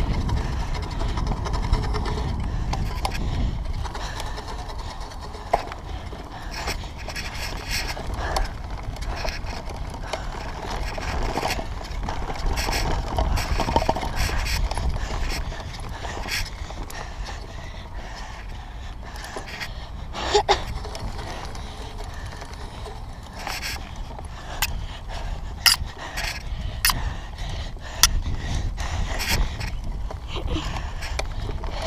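Mountain bike ridden over grass and dirt, heard from an action camera on the rider: a steady low rumble of wind and tyres, with sharp rattles and knocks from the bike over bumps, more of them in the last ten seconds.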